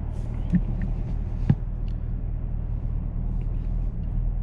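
Steady low drone of a Chevrolet Camaro ZL1's engine and road noise heard inside the cabin at low speed, with a sharp click about one and a half seconds in.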